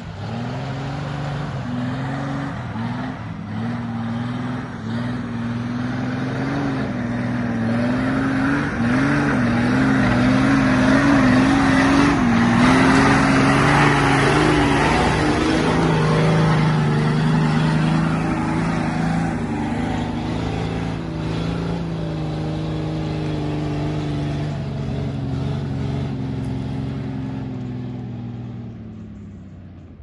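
Jeep off-roader's engine labouring up a muddy forest track, its revs rising and falling unsteadily as it climbs, with tyres working through mud. It grows louder as it comes close, is loudest about halfway through, and fades near the end as it drives off up the slope.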